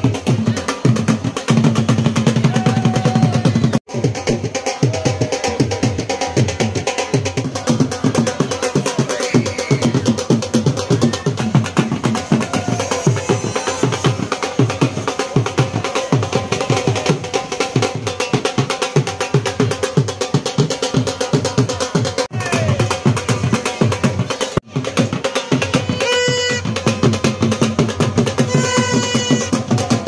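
Traditional dhol drums beaten in a fast, unbroken rhythm. Two short pitched notes sound near the end.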